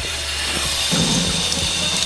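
Sink tap running, a steady stream of water splashing onto a hand and into the basin, starting suddenly and holding at an even level.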